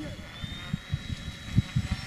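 Radio-controlled seaplane's pusher motor and propeller running with a thin high whine that rises slightly in pitch as it gathers speed across the water. Low thumps come through underneath, the loudest about one and a half seconds in.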